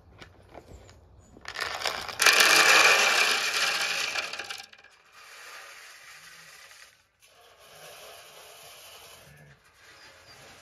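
Dry feed poured from a bucket into a metal trough: a loud rattling rush for about three seconds, then two quieter stretches of pouring further along the trough.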